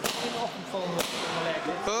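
Two sharp paintball marker shots about a second apart, over background chatter.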